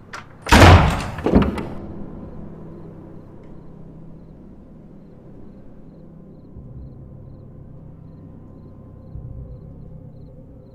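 Two loud bangs about a second apart, the first the louder, with a low rumble ringing on after them and dying away into a low steady drone.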